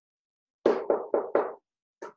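Four quick knocks in a row, starting about half a second in and over within a second.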